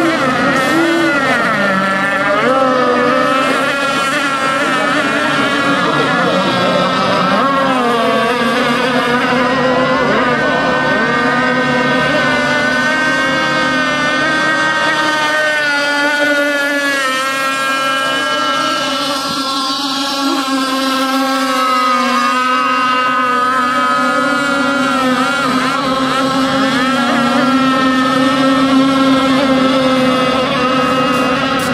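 Several radio-controlled racing boats' small engines running at high revs together, their overlapping whines rising and falling in pitch as the boats speed around the course and pass one another.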